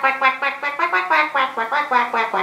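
A woman singing a quick, bouncy tune unaccompanied, with about eight short notes a second.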